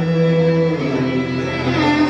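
Live Carnatic music with violin: a long held melodic note that steps to a new pitch about a second in, with a slide near the end.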